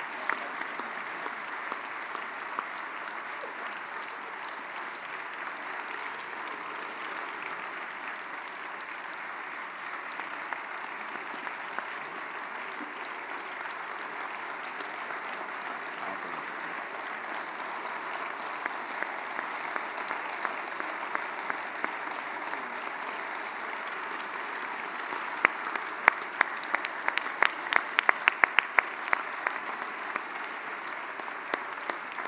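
A large audience applauding steadily, a dense, even patter of many hands. Near the end, loud, sharp individual claps from someone close by stand out above the crowd.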